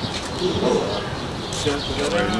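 Indistinct voices of several people talking at a moderate level, softer than the clear speech around it.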